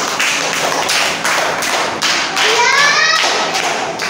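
Children clapping in a steady rhythm, about three claps a second, with a child's voice calling out a short rising phrase about two and a half seconds in.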